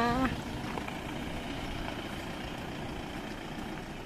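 Cars pulling away slowly close by, engines running in a steady low rumble.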